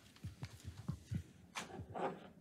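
Footsteps on a hard floor: a string of soft thumps, about four a second, with a sharper click about one and a half seconds in.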